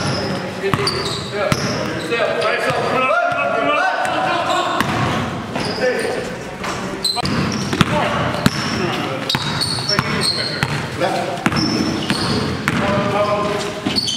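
Live game sound in a gymnasium: a basketball bouncing on the hard court amid sharp knocks and short high squeaks, with players' indistinct shouts, all echoing in the large hall.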